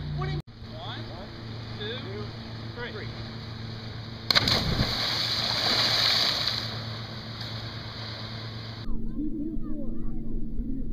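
A person plunging into lake water: a sudden sharp splash about four seconds in, followed by a couple of seconds of spray and water falling back that die away.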